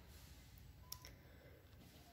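Near silence: faint shop room tone, with one short, faint beep about a second in.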